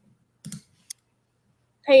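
Two short, sharp clicks about half a second apart: a computer mouse clicking to advance a presentation slide.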